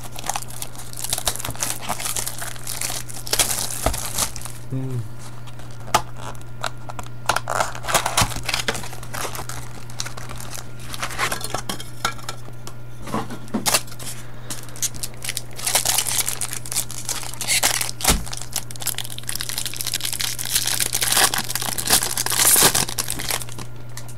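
Foil wrappers of trading-card packs crinkling and tearing as they are ripped open by hand, in repeated bursts, over a steady low hum.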